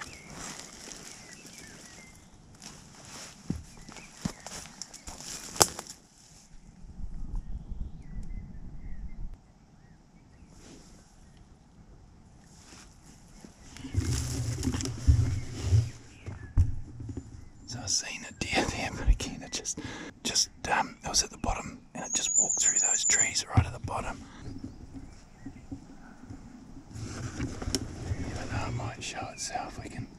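Close handling noise of camera gear: rustling, clicks and knocks as a camera and tripod are handled and set up, with dull thumps of handling on the microphone.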